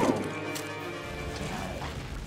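A cartoon crash hits at the very start, then held music chords ring on and slowly fade.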